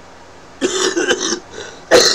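A man coughing, in two bouts: one starting about half a second in, and a louder one near the end.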